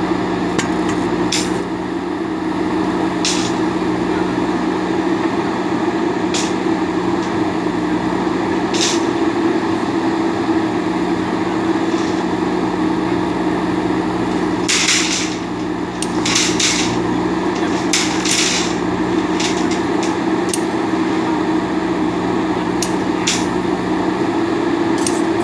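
JCB backhoe loader's diesel engine running steadily under working load as the rear backhoe digs soil, with irregular sharp clanks and knocks from the working arm and bucket, a cluster of the loudest a little past the middle.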